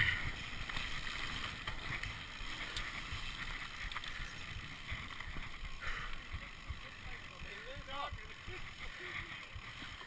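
Mountain bike riding over a dirt trail and gravel track: the steady noise of the tyres rolling and the bike rattling, with irregular low knocks as it goes over bumps.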